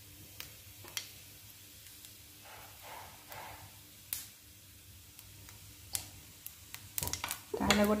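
Cumin seeds frying in hot oil in a non-stick pan: a faint, steady sizzle with a few sharp pops.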